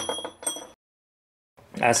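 A single metal clink with a short ringing tail from the steel exhaust flange, which has broken free because its weld to the cast-iron manifold failed. The sound cuts off suddenly under a second in.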